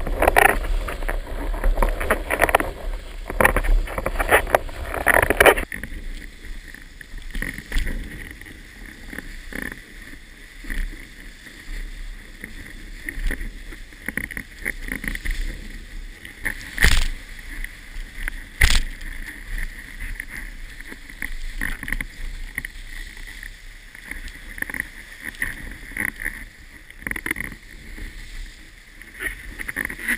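Water rushing and splashing past a windsurf board at speed, with wind buffeting the boom-mounted camera's microphone. About five seconds in, the loud, gusty rush drops abruptly to a thinner, quieter wash, and two sharp knocks sound close together about halfway through.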